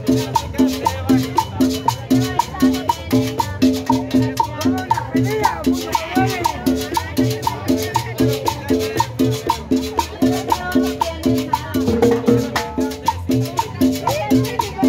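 Salsa music played by a street band, with saxophone and hand drums over a steady beat marked by a short tick about twice a second.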